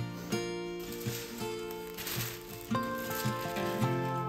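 Background music of plucked acoustic guitar. Tissue paper rustles as it is handled, about one to two and a half seconds in.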